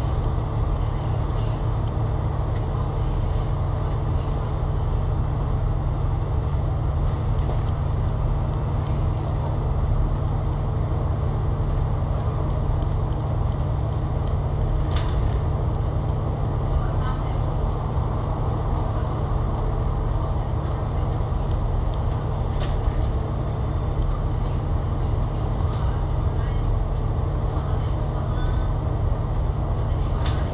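Alexander Dennis Enviro500 MMC double-decker bus cruising steadily at highway speed, heard from the upper deck: the Cummins L9 diesel's low drone under tyre and road rumble, with a few short rattles from the body. A faint high pip repeats about once a second during the first ten seconds.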